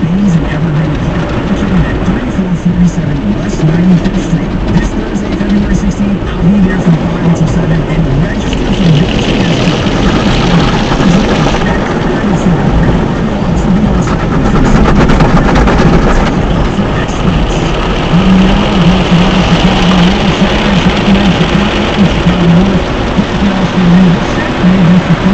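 Automatic tunnel car wash heard from inside the car: water jets and washing equipment spraying and beating on the windshield and body, steady throughout, with heavier spray about nine seconds in and again from about seventeen to twenty-two seconds.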